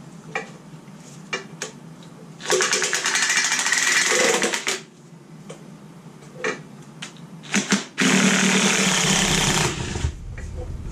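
Cordless impact driver hammering in two bursts of about two seconds each, backing out oil pan bolts, with a few light clicks of metal on metal between the bursts.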